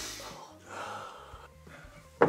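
A person's soft breath fading out, then quiet room tone.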